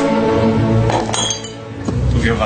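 Background music with held notes fading out, then about a second in a brief high glassy clinking.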